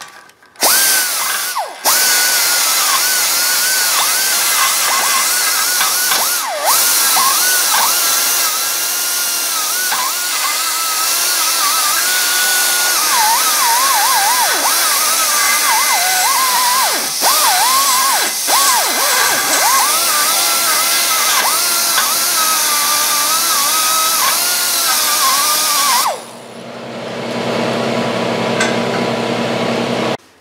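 Air die grinder with a carbide burr cutting steel, its high whine dipping again and again as the burr bites and loads. It is grinding down the mushroomed, egg-shaped edge of a worn pin hole so a bushing will fit. The grinder stops a few seconds before the end, and a lower steady hum follows and grows louder.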